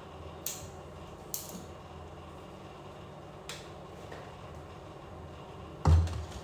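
Quiet kitchen room tone with a steady low hum and a few faint light clicks, then a single dull thump just before the end.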